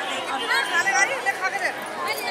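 Voices chattering: several people talking, with no single clear speaker.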